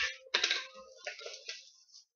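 Cellophane shrink wrap crinkling and tearing as it is pulled off a sealed trading-card box: a short rustle at the start, then about a second of crackling from about a third of a second in.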